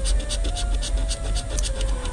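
A scratcher coin scraping the coating off a scratch-off lottery ticket in rapid, evenly repeated strokes.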